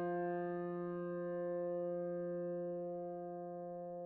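A single piano chord held under a fermata, its notes ringing on together and slowly fading with no new notes struck.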